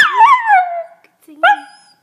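American Eskimo dog howling: one howl that starts high and slides down over nearly a second, then a short second howl about one and a half seconds in. A lower-pitched person's voice howls along with it.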